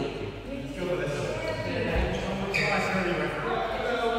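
Badminton in a hall with a wooden floor: a heavy thud of feet on the court about halfway through and a sharp racket-on-shuttlecock crack just after, with people talking throughout.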